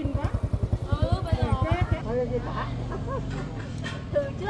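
Women's voices chattering over a small engine running close by. The engine's rapid low putter is loudest in the first half and eases about halfway through into a steadier low hum.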